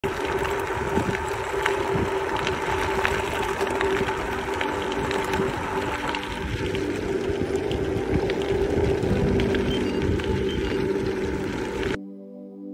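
Wind buffeting the microphone and bicycle tyres rolling fast over a gravel road, with a steady hum and scattered small clicks of gravel throughout.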